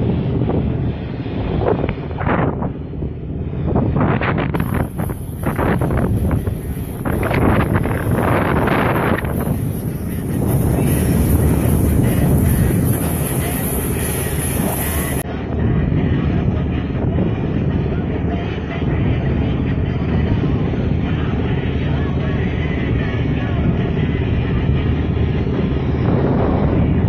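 A boat's engine running steadily under way, with wind buffeting the microphone in gusts during roughly the first ten seconds.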